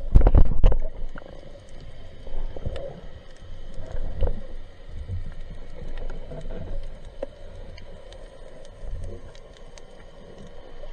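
Muffled underwater sound from a camera moving through the water: a cluster of loud low thumps in the first second, then an uneven low rumble of water movement with scattered faint sharp clicks.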